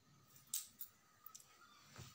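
A few light, sharp clicks close to the microphone, the loudest about half a second in and fainter ones following.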